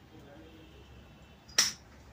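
A single sharp click about one and a half seconds in, over quiet room tone.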